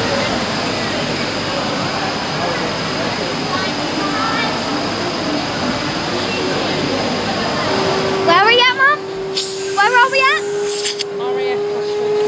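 Busy indoor hall: crowd chatter over a steady rushing hiss. Louder nearby voices come in about two-thirds of the way through, along with a steady low hum.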